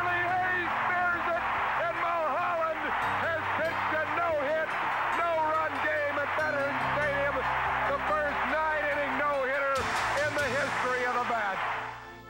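Stadium crowd cheering and yelling, many voices at once, over held music chords that change twice.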